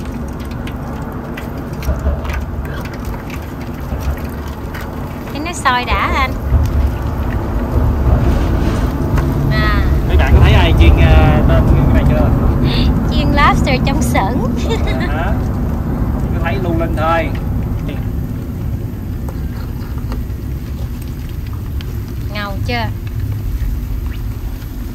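Battered lobster pieces deep-frying in hot oil in a foil pan: a steady sizzle and bubbling.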